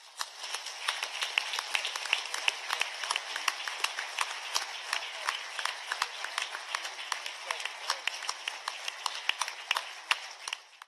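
A large audience applauding: many people clapping in a dense, steady patter.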